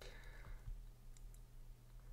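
Near silence: faint room tone with a few soft clicks, one near the start of the pause and a couple more in the middle.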